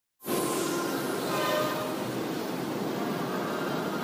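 Electric commuter train passing: a steady rushing noise, with faint held whining tones in the first second or two.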